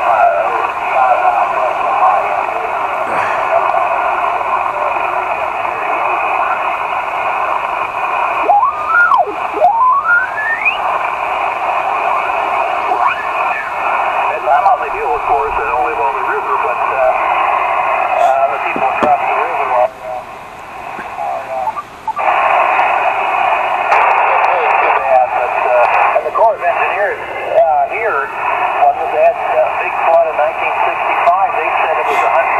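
Elecraft KX2 transceiver's speaker playing distant single-sideband voices from the 20-metre band, thin and narrow-sounding over steady hiss. A rising whistle sounds about nine seconds in, and the sound drops briefly around twenty seconds in as the tuning knob is turned to another frequency.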